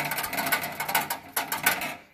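Loose exhaust heat shield under a 2010 Toyota Prius rattling fast and loudly against the exhaust while the car idles. The shield is barely attached because its mounting bolts have rusted through.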